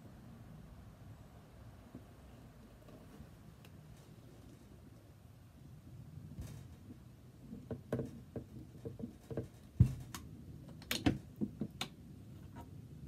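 Bench-mounted hand-lever sheet metal shear cutting thin copper sheet: quiet at first, then a run of irregular clicks and metallic knocks in the second half, with a few louder clunks near the end.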